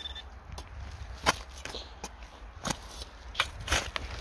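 Several short, sharp knocks and crunches of dry, cloddy field soil being dug and broken up at a metal-detecting hole, spaced irregularly about a second apart, over a low steady rumble. A brief high beep sounds at the very start.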